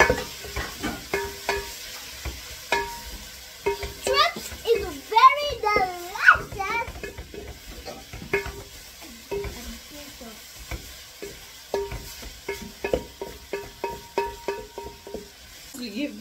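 A wooden spoon stirring frying tripe and peppers in a stainless steel pot. It knocks against the metal sides in irregular strokes that ring briefly, over a low sizzle.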